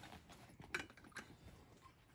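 Quiet sounds of a person finishing a drink from a water bottle and lowering it, with two small clicks, the first about three-quarters of a second in and the second just over a second in.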